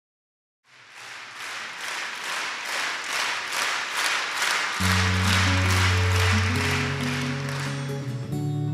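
Audience applauding in a large hall, the applause swelling. About five seconds in, the band comes in with long held low notes under the clapping.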